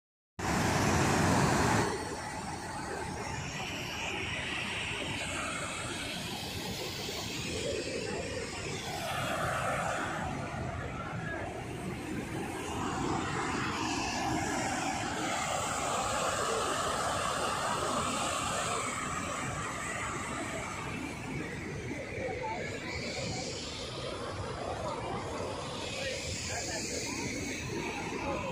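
Waterfall rushing steadily as white water cascades over rocks, louder for the first second or so, with voices of people faintly mixed in.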